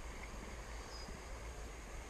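Steady hiss of a flowing stream, with a faint short high chirp about a second in.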